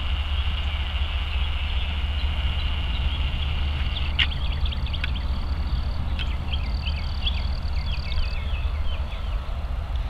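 Norfolk Southern freight train moving slowly past: a low steady rumble with a steady high-pitched squeal for about the first four seconds, likely wheel flange squeal. After that, small birds chirp many times over the rumble.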